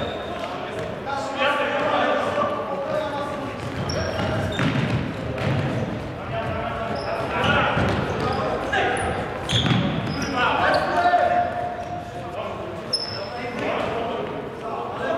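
Futsal game in a large sports hall, echoing: players shouting to each other, the ball being kicked and bouncing on the wooden floor, and a few short high squeaks from shoes on the floor.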